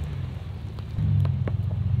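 Pickup truck engine running low as the truck creeps over a pile of cut brush and wood chips, with twigs snapping under the tyres a few times. The engine gets louder about a second in.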